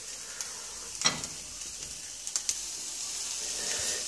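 Seafood (cuttlefish, swordfish steaks and king prawns) sizzling on a wire grill over glowing charcoal: a steady hiss broken by a few sharp pops, one about a second in and a couple more midway.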